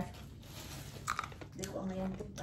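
A person chewing crunchy soaked soybeans with the mouth near the microphone. A sharp crunch comes about a second in, then a short hummed "mm" near the end.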